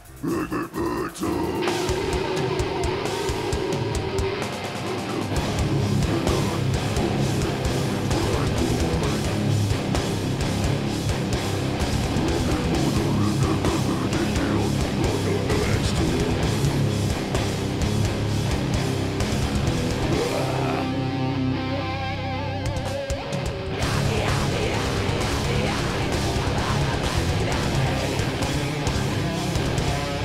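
Metalcore band playing live at full volume: heavy distorted electric guitars and drums, kicking in hard right at the start. About two-thirds of the way through the cymbals and top end drop out for a couple of seconds before the full band comes back in.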